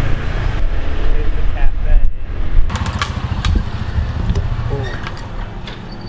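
Low rumble of street traffic, with brief snatches of distant voices and a few sharp clicks around three seconds in. The rumble eases off over the last couple of seconds.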